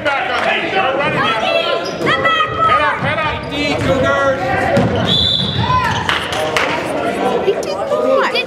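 Basketball bouncing on a hardwood gym floor during play, with short high squeaks from sneakers as the players run. Voices carry through the echoing gym.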